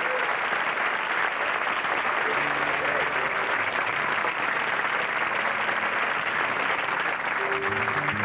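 Studio audience applauding steadily, with a piano starting to play softly underneath about two seconds in.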